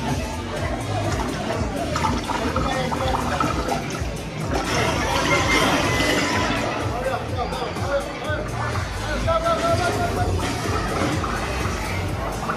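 Background music playing in a large indoor space, mixed with indistinct chatter of people around.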